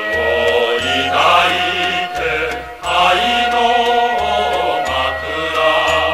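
Mixed choir singing a Japanese wartime song in long held phrases over an instrumental accompaniment with a stepping bass line, with a short breath between phrases about three seconds in.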